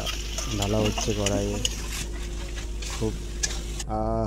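Onions and spices frying in a metal karai with a steady sizzle, while a metal spatula scrapes and clicks against the pan as spice paste is scraped in and stirred. The sizzle stops abruptly just before the end.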